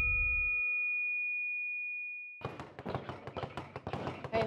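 Ringing tones left by a closing hit in the background music fade away over about two seconds, the highest one lasting longest. About two and a half seconds in, the rapid, irregular rattle of a speed bag being punched begins.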